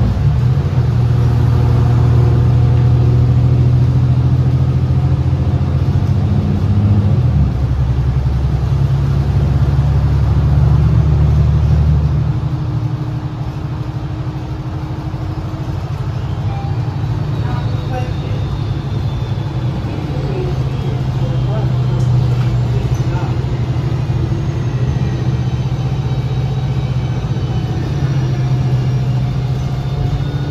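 Cabin sound of a 2019 New Flyer XD60 articulated diesel bus driving at speed: a steady deep engine and drivetrain hum with road noise. The engine note shifts about seven seconds in and drops off about twelve seconds in as the bus eases off, then builds again in the second half, with faint rising whines.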